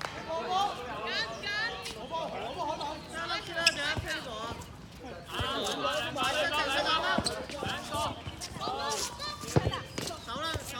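Dodgeball players shouting and calling over one another, with a rubber dodgeball bouncing and smacking on the hard court a few times, the sharpest hits about a third of the way in and just before the end.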